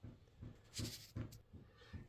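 Faint breaths and a few small throat sounds from a man, short and quiet, spread across two seconds.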